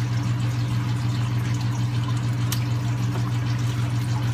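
Water pump running: a steady electric hum with a hiss of moving water, and one light click about halfway through.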